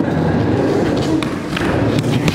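Skateboard wheels rolling steadily across a wooden ramp, a continuous rumble with a couple of light clicks from the board partway through. The board is a deck cut in half and rejoined with door hinges.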